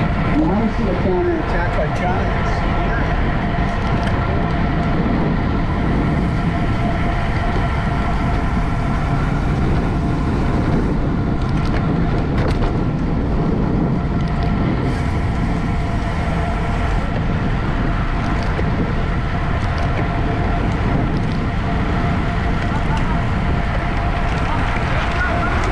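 Wind rushing steadily over the microphone of a camera mounted on a road bike moving at racing speed.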